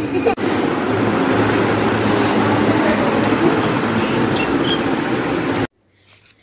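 Steady noise of a running road vehicle close by, with indistinct voices mixed in; it cuts off abruptly shortly before the end.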